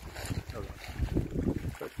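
Wind gusting against a phone's microphone: an uneven low rumble that rises and falls in quick buffets.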